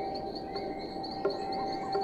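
Crickets chirping in a quick, even series of high chirps, about five a second, with a steady low tone held beneath.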